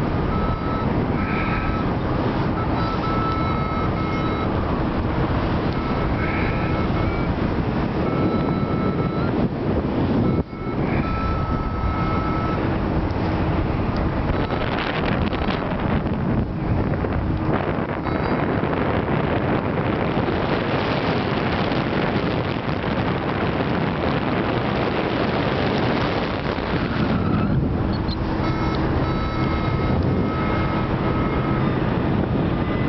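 Steady rush of wind on the microphone in flight, with faint steady tones that come and go through it. There is a brief drop-out about ten seconds in.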